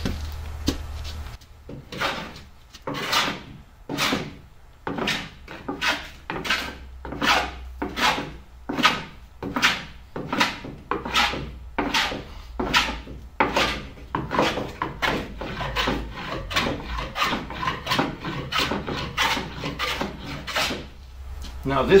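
Round-soled wooden hand plane shaving the wooden strip planking of a hull in quick, even, repeated strokes, about two a second, each a short scraping hiss of the blade cutting wood.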